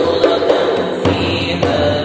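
A group of men's voices chanting an Arabic nasheed together, holding long sustained lines, with light percussive beats underneath.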